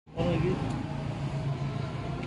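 Outdoor ambience with indistinct voices of people talking at a distance and the low sound of a vehicle engine.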